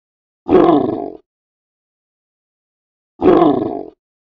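Brown bear growling: two short growls, each under a second, about two and a half seconds apart.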